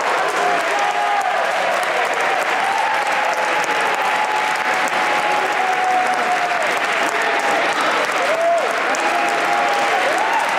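Audience applauding steadily, with voices shouting and whooping over the clapping.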